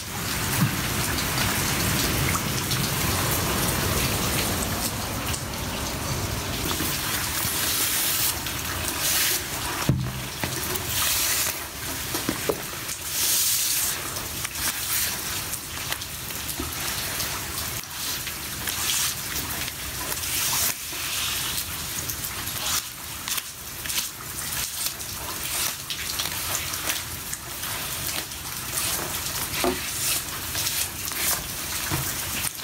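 Rain and running water splashing over a flooded concrete floor, a steady wash of water with drips and small splashes throughout and louder surges now and then.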